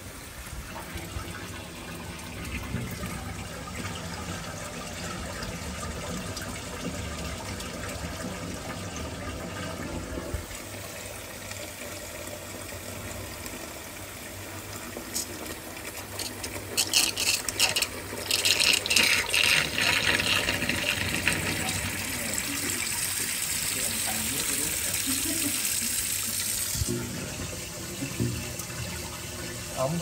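Kitchen faucet running a steady stream into a sink basin, splashing into water standing over the drain, as the drain of a clogged sink is tested. The splashing gets louder and brighter from about halfway through, easing off near the end.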